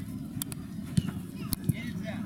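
Indistinct players' voices calling on an outdoor mini-football pitch, with a few sharp thuds of the ball being kicked.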